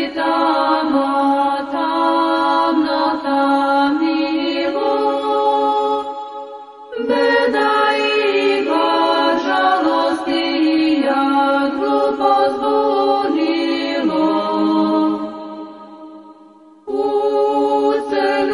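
Orthodox Christian chant sung a cappella, in long held phrases. The singing dies away briefly about six seconds in, and again near the end on a low held note that fades before the next phrase begins.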